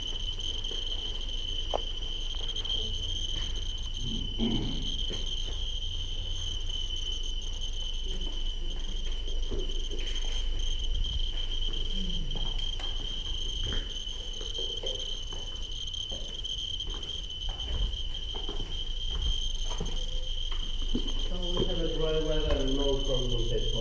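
Several handheld Geiger counters clicking irregularly over a steady high-pitched electronic tone from one of the instruments, as they count radiation from contamination on the surfaces.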